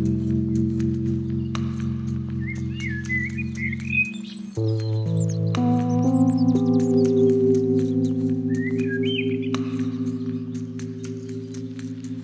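Slow ambient meditation music of long sustained chords, which change a little over four seconds in, with songbird calls layered over it in two short spells, one around two to four seconds in and one near two-thirds through.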